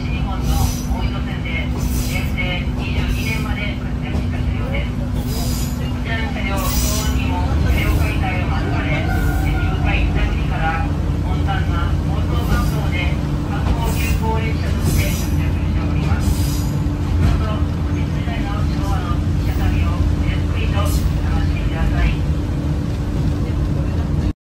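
Isumi Railway diesel railcar under way, heard from inside the passenger cabin: a steady low engine drone and running rumble, the engine's note stepping up a little about eight seconds in.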